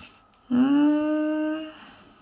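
A person humming one steady, level-pitched 'hmm' that starts about half a second in and lasts just over a second.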